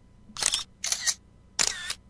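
Three camera-shutter sound effects in quick succession, each a short, sharp burst, about half a second apart.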